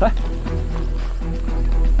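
Background music with a steady low drone and a quiet repeating pattern of short notes; a man calls out one short word right at the start.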